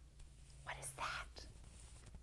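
A woman whispering faintly: two short, hushed, breathy sounds about a second in.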